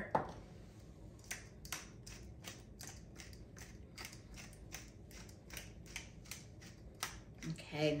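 A hand-twisted glass spice grinder with a blue cap being turned over raw chicken, grinding in a steady run of short crunching strokes, about three a second. A single knock comes right at the start as a mill is set down on the counter.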